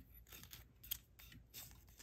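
Faint crinkling and rubbing of blue painter's tape being pressed and smoothed down by fingertips over the horn of a wooden plane tote, in a run of short scratchy strokes with one sharper tick about a second in.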